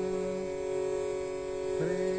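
A steady drone of held tones with a man's long chanted note on top. The note breaks off about half a second in, and a new note slides up into place near the end.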